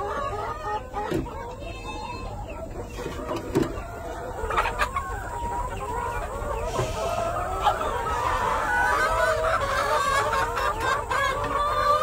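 Chickens clucking and calling continuously in a coop, several birds at once, with a few short knocks among the calls.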